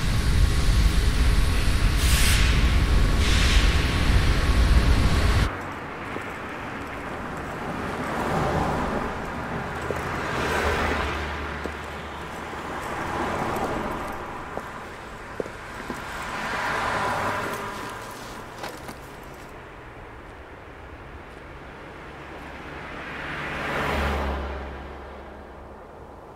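A loud, steady rumble of machine-shop noise that cuts off suddenly about five seconds in. Then cars pass one after another on a street, each swelling and fading, about five in all.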